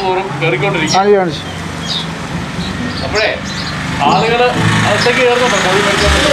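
A steady low engine hum from a running vehicle with street traffic, with men talking over it.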